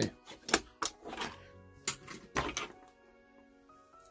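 Sharp plastic clicks and taps, about six in the first three seconds, from a Hot Wheels toy car with a launcher lever being worked by hand, over faint background music.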